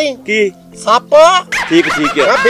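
Men's voices in short spoken bursts, with a brief high yelping sound about a quarter second in.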